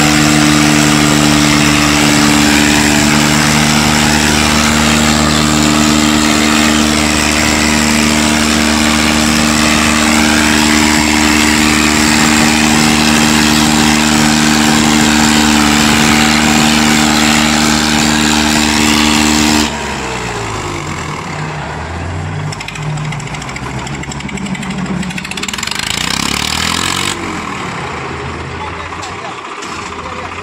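Swaraj tractor diesel engine running loud at steady high revs. About twenty seconds in the sound drops suddenly to quieter engine running whose revs rise and fall, with voices over it.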